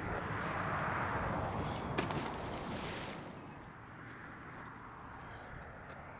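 A car passing on the adjacent road, its tyre and engine noise swelling and then fading over about three seconds, leaving a faint steady traffic hum. A single sharp click about two seconds in.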